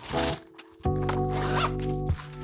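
Background music of held, steady chords, with a short rasping zip of a backpack zipper near the start and a fainter rustle later.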